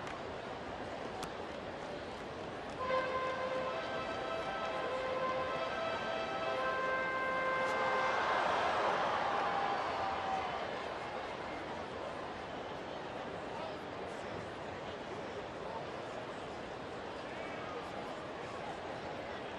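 Ballpark crowd noise from a large stadium crowd, with music over the stadium PA playing a run of short held notes for a few seconds. The crowd swells louder about eight seconds in, then settles back to a steady murmur.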